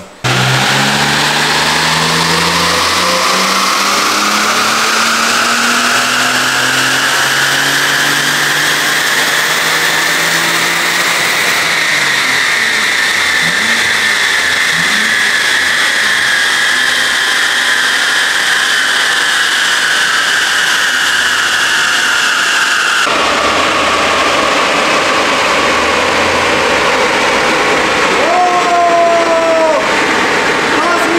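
Supercharged BMW M54 straight-six at full throttle on a chassis dyno during a power run, with the engine cooled down beforehand. Its note climbs steadily in pitch for about twelve seconds, then falls away as it winds down, and the sound drops sharply about 23 seconds in.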